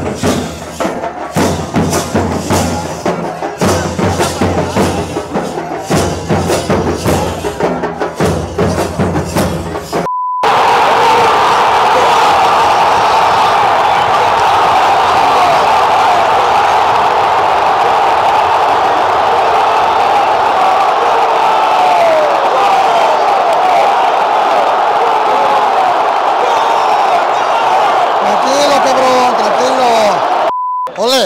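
A hired fan band beating drums in a quick, steady rhythm among fans for about the first ten seconds. A short beep cuts it off, then a large stadium crowd sings and cheers, loud and unbroken.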